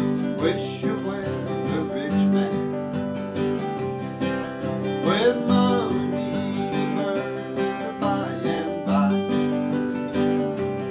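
Two acoustic guitars playing an instrumental break: steadily strummed chords with a melody line moving over them.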